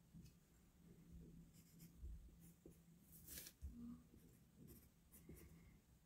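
Faint, intermittent scratching of a graphite pencil drawing lines on paper.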